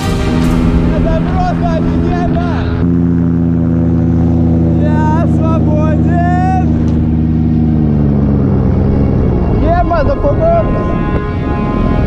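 Paramotor engine droning steadily, its pitch gliding down about eight to nine seconds in as it throttles back for the landing. Voices call out over it.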